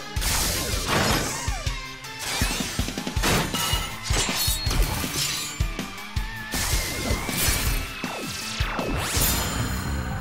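Cartoon power-up sequence: action music under a rapid string of whooshes, crashing and shattering sound effects as the hero's armour forms.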